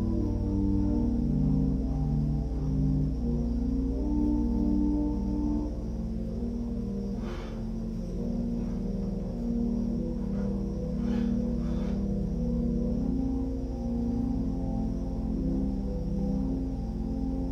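Soft, slow organ music: sustained chords held for a second or more and changing smoothly. A few faint clicks come through in the middle.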